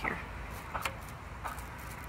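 A few faint crinkles from the clear plastic bag wrapped over the knitting machine as it is handled, over a low steady rumble.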